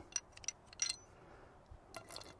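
A few faint metal clicks and clinks, mostly in the first second, as a Radian Ramjet barrel is handled and lifted out of a Glock slide.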